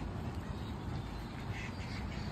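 Canada geese calling a few times in short notes near the end, over a steady low rumble.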